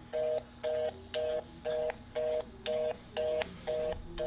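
Telephone fast busy signal played through an iPhone's speaker: a two-tone beep repeating about twice a second. It is the reorder tone, the sign that the call cannot get through.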